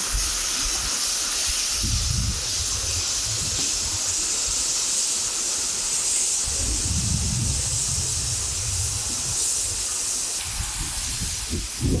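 Waterfall's rushing water heard as a steady, even hiss. Low gusts of wind buffet the microphone about two seconds in and again through the middle.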